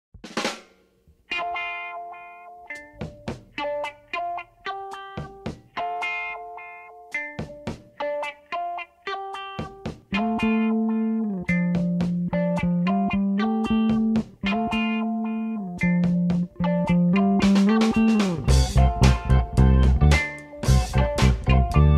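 Funk band recording with an electric bass playing along: sparse clean plucked guitar notes open it, a held lower part comes in about halfway, and near the end the drums crash in with a fill and the full groove starts with bass guitar.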